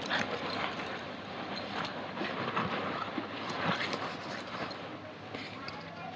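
Two Bichon Frise dogs play-fighting on a vinyl bean bag chair: scuffling and rustling on the cover, with growls.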